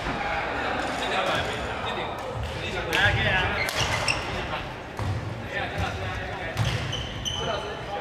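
Badminton doubles rally on a wooden sports-hall floor: players' footsteps thudding repeatedly as they lunge and shift, shoes squeaking near the end, and sharp racket strikes on the shuttlecock, with voices echoing around the hall.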